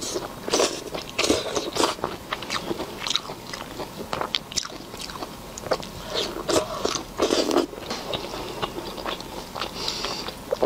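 Close-miked biting and wet chewing of soft, sauce-coated braised food, with irregular mouth clicks and smacks. The louder clusters of bites come in the first two seconds and again around seven seconds in.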